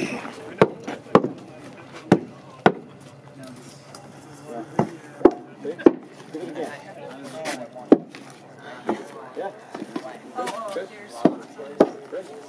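Heavy mallet striking the timbers of a post-and-beam frame: about eleven sharp wooden knocks at irregular intervals, often two in quick succession. The blows drive the braces and joints home while the frame is clamped and pulled toward square.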